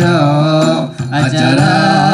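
Male voices singing a slow, ornamented Acehnese chant (seumapa / hikayat style), with long wavering held notes over a hand-played frame drum (rapa'i).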